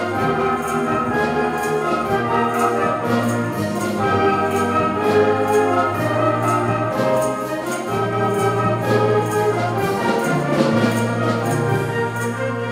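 Concert wind band playing an arrangement of an English folk tune: flutes, clarinets, saxophones and brass over a tuba bass, with a steady drum-kit beat.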